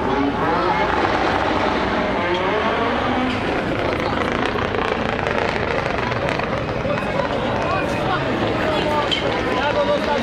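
Rallycross cars racing, their engines revving hard, with a voice talking over them.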